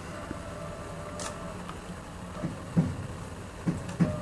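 Small CNC milling machine humming steadily with a faint whine, while the operator re-jogs the axis to reset the Haimer 3D taster against the workpiece; a few soft knocks and clicks come through.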